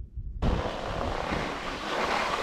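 Steady wind noise rushing over the camera's microphone, starting abruptly about half a second in.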